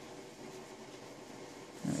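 Quiet, steady background hum of room tone, like an air conditioner or fan running, with no distinct event. A single spoken word comes right at the end.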